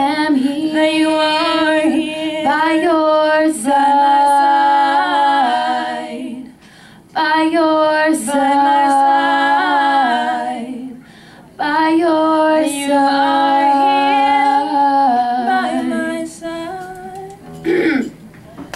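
Two women's voices singing a cappella, in three long sustained phrases with short breaks between: the closing phrases of the song.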